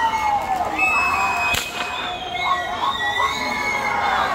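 Shacshas dancers' leg rattles of dried seed pods shaking as they dance, over a mix of high, wavering tones from the band and crowd. A single sharp crack comes about a second and a half in.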